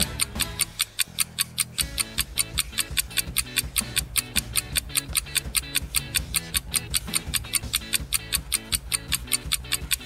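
Countdown timer music: a clock-like ticking at about four ticks a second over a low, steady musical bed, with a bass line coming in about two seconds in.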